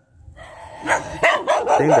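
Brief quiet at a cut, then a man's voice speaking Vietnamese from about a second in.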